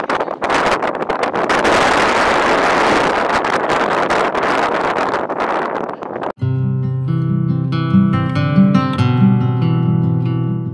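Wind noise on the microphone for about six seconds, then a sudden cut to background acoustic guitar music of picked notes.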